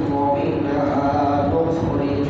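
A man's voice chanting in long, held melodic lines, in the intoned style of a Bengali Islamic sermon (waz).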